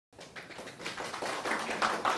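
Light scattered applause from a small room audience with faint voices, coming in just after the start and growing louder.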